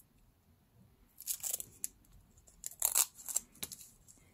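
Paper medical tape being pulled off its roll and torn by hand: a short rasp about a second in, then a cluster of quick rasps near the end.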